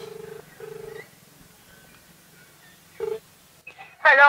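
Telephone ringback tone heard through a mobile phone's speaker: a double ring of two short steady beeps, then the next double ring starting about three seconds in. The call is ringing and has not yet been answered.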